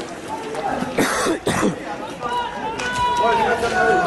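Several people's voices talking and shouting over one another, with a harsh cough-like burst about a second in and long drawn-out calls near the end.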